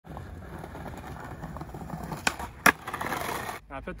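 Skateboard wheels rolling over brick paving with a steady rumble, broken by two sharp clacks a little past halfway, the second louder.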